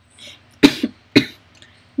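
A woman coughing twice, two short, sharp coughs about half a second apart.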